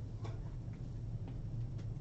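Faint ticking of a wall clock, about two ticks a second, over a steady low electrical hum of room tone.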